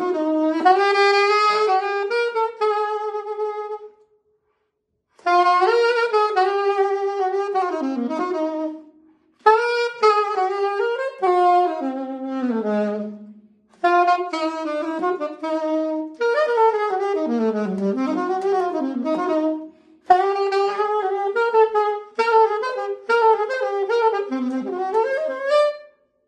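Unaccompanied saxophone improvising a jazz line on the bebop scale: five phrases of quick running notes, each a few seconds long, separated by short breath pauses, the longest gap about four seconds in.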